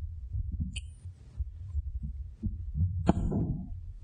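Microphone handling noise: irregular low thumps and rumble, with a sharp click about three seconds in.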